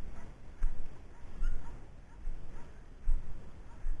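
Braque du Bourbonnais puppy giving faint, short whimpers and yips while hunting through grass, over irregular low thumps from the moving microphone.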